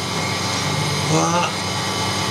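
A person's voice, brief and untranscribed, about halfway through, over a steady background hum and noise.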